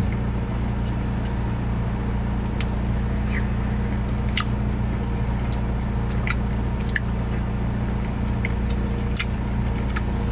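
Steady low hum in a car cabin, with scattered small clicks and chewing as a spoon scoops chili from a paper cup and he eats.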